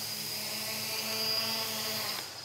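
Holybro X500 quadcopter's four motors and propellers holding a low hover: a steady hum.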